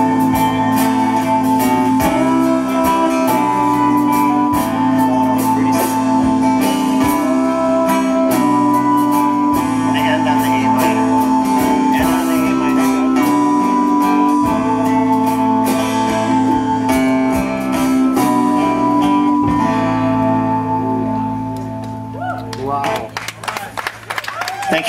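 Live rock band playing: strummed acoustic and electric guitars over bass and drums, with long held chords. The music winds down and fades about three seconds before the end.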